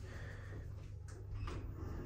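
Otis 2000 hydraulic lift car with a steady low hum, and a couple of faint clicks about a second in, as the lift responds to a floor call before its doors open.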